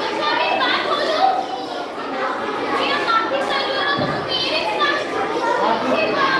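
Many children talking and calling out at once, an overlapping babble of kids' voices.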